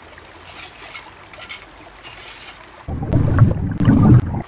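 A steel trowel scrapes mortar against brick in three short strokes. About three seconds in, a loud low rumble takes over and is the loudest sound.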